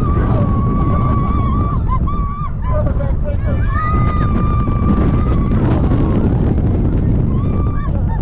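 Wind rushing over the microphone as a steel roller coaster train rolls over a hill and drops. Riders let out long held screams over it, in two stretches with a short break in between.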